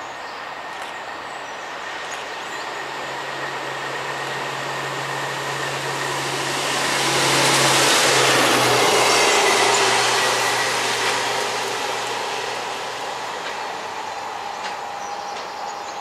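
Colas Rail diesel track tamper DR73805 passing through at line speed. Its engine drone and wheel-on-rail noise build to a peak about halfway through, the engine note drops slightly in pitch as it goes by, and then the sound fades away.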